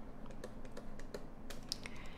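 Faint, irregular light clicks and taps of a stylus writing on a tablet.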